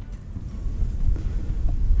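Low, steady wind rumble on the microphone, growing a little louder toward the end.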